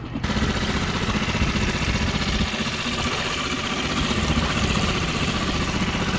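Small boat's outboard motor running steadily under way, with wind and water rushing past; the whole sound jumps louder a fraction of a second in.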